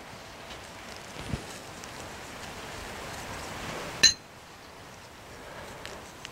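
Faint hiss of dry barbecue rub being sprinkled by a gloved hand over raw sausage meat on plastic wrap, with a single sharp clink about four seconds in, like a small ceramic dish being knocked.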